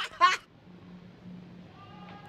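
A short, high vocal sound in the first half-second, then a faint steady low hum.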